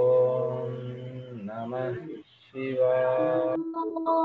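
A voice chanting a mantra in long, held notes, with a short gliding passage about one and a half seconds in, then a brief pause and two more held notes at different pitches.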